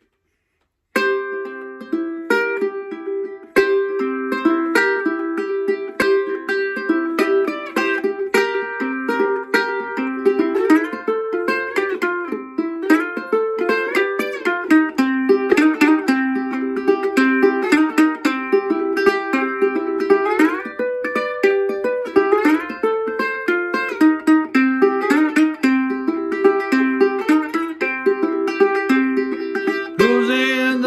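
National steel resonator ukulele in C tuning played with a slide: a picked, repeating blues riff that starts about a second in, with notes gliding up in pitch in places.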